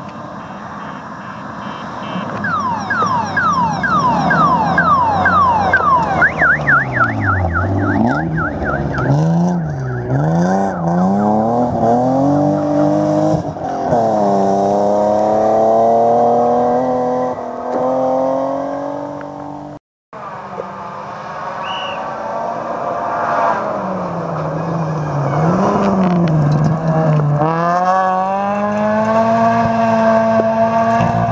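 Front-wheel-drive rally cars at full throttle on a gravel stage: an engine revs hard, its pitch climbing and dropping again and again through quick gear changes as the car approaches. After a sudden break about two-thirds of the way in, another rally car's engine is heard climbing through its gears as it approaches.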